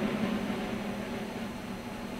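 Fading tail of a loud orchestral percussion hit in a film score: a low note dies away slowly under steady hiss from the old optical soundtrack.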